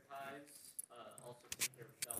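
Faint speech from someone away from the microphone, with a few sharp clicks about one and a half seconds in.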